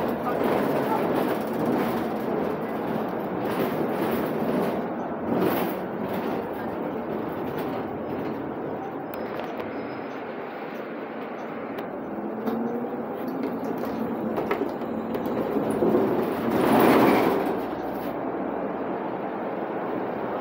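Cabin noise of a 2020 Nova Bus LFS diesel city bus under way: steady road and drivetrain noise with frequent knocks and rattles from the body and fittings, swelling louder briefly near the end.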